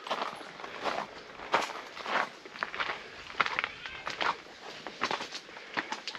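Footsteps going down gravel-strewn concrete steps and over rough rock, an uneven step roughly twice a second.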